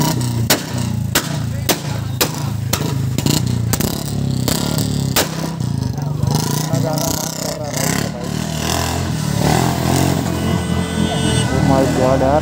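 Sport motorcycle engine idling steadily while the bike stands still, with a string of sharp clicks or knocks over the first few seconds and people's voices around it.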